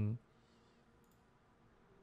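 Near silence with a faint click or two of a computer mouse about a second in.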